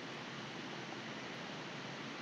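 Faint, steady hiss of room tone and microphone noise, with no clicks or other events.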